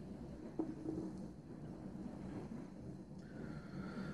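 Quiet room tone with one light knock about half a second in: an aluminium beer can being set down on a table.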